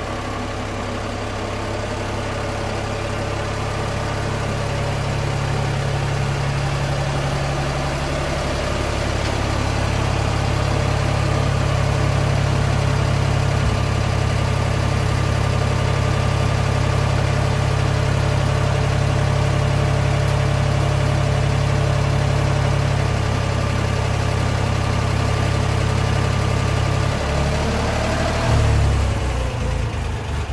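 1972 Ford 2000 tractor's three-cylinder engine running steadily, growing louder over the first ten seconds as the tractor drives up close. Near the end the engine note shifts and falls.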